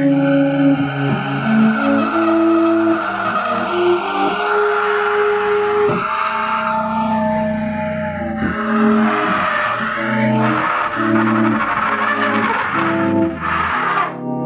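Electric guitar improvising free jazz: held low notes that shift in pitch every second or two, under a gritty, noisy upper layer with sliding pitches.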